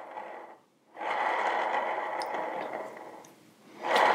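A carbon arrow tipped with a Magnus Black Hornet broadhead spinning on an arrow spinner's rollers: a steady whirring rush, heard in two spins. The second starts about a second in and slowly dies away by about three and a half seconds. The arrow spins pretty good, a sign that the insert and broadhead run true.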